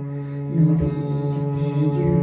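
Live ensemble music: a bowed cello playing long, held low notes over keyboard accompaniment, changing note about half a second in.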